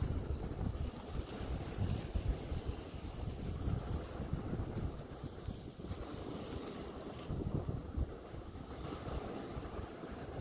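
Wind buffeting the microphone in uneven gusts, over small waves washing onto a shingle beach.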